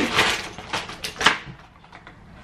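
Paper packaging rustling and crackling as a small boxed watch strap is pulled out of a paper mailer bag, with a few sharp crinkles about a second in, then it goes quiet.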